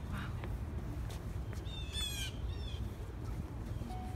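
Birds calling outdoors: a few short calls early on, then a quick run of calls about halfway through, over a steady low rumble.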